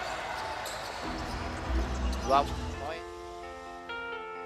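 Basketball arena ambience, a steady hum of crowd and court noise. About three seconds in, a short music sting with held notes begins, the broadcast's transition into a replay.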